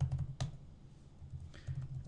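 Typing on a computer keyboard: a quick run of keystrokes in the first half second, then a few scattered ones.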